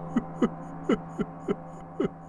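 Background score: a sustained low drone under a run of about six short struck notes, each sliding down in pitch, coming at uneven intervals.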